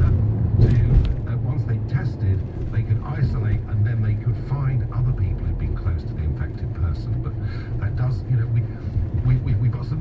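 Steady low rumble of a car driving slowly through city streets, heard from inside the car.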